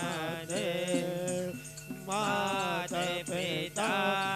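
Hindu devotional singing from a Shiva evening aarti, over a steady drone accompaniment. The singing breaks off briefly about one and a half seconds in, then resumes.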